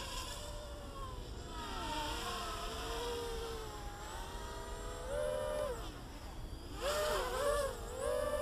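Quadcopter motors and propellers buzzing, the pitch gliding up and down as the throttle changes. Two short bursts of higher, louder buzz come about five and seven seconds in.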